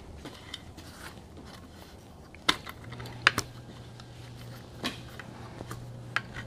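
Small metallic clicks and taps of a wrench working the bolts on an aluminium battery-tray clamp as they are tightened, with a few sharper clinks in the middle.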